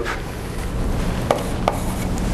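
Chalk writing on a blackboard: scratchy strokes with two sharp taps a little past the middle, over a steady low hum.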